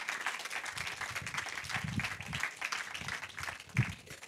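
Audience applauding, the clapping thinning out near the end.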